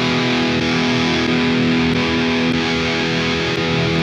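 Electric guitar through the PolyChrome DSP McRocklin Suite plugin's distorted GAIN amp and A3 speaker chain, playing one chord that is held and left ringing, steady and sustained.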